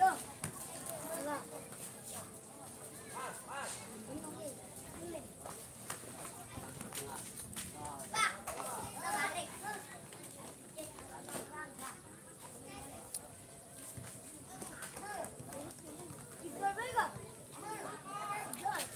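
Scattered, distant shouts and calls from football players and onlookers during a match, with no voice close to the microphone.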